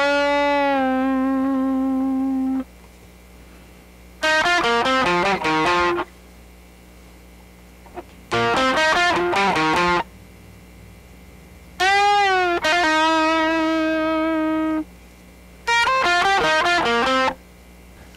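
Electric guitar, tuned down to C standard, playing five short solo licks up to speed with pauses of a second or two between them. One lick bends a note up and releases it, then holds a long note. A faint steady low hum fills the pauses.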